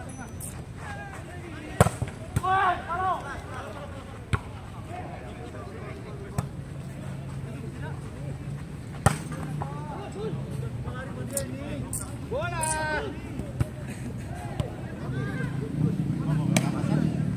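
A volleyball being struck by players' hands during a rally: a series of sharp slaps a couple of seconds apart, with players shouting in between.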